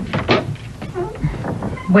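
Wooden front door unlatched and pulled open: a quick run of clicks and knocks.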